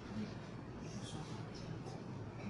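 Steady low room hum with a few faint, soft rustles of paper and a calligraphy brush, about a second in and again near the end.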